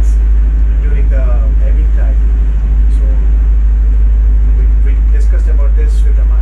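Steady low drone of a small harbour boat's diesel engine heard inside its wheelhouse, with faint voices under it.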